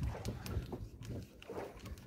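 A freshly caught fish thrashing in the hand while being unhooked: irregular wet slaps and knocks, with a few sharp clicks.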